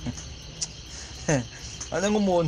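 A pause in a man's speech, with one short spoken syllable a little past halfway, over a steady high-pitched buzz in the background.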